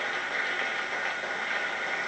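Steady hiss-like noise in a pause between a man's spoken sentences, even in level throughout.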